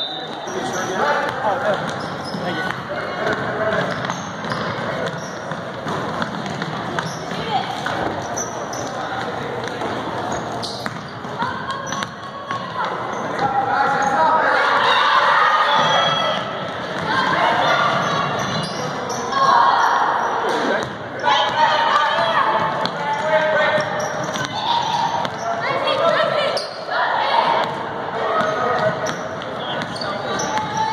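Basketball game sound in a large gym: a ball bouncing on the hardwood court, with players and spectators calling out and chattering throughout.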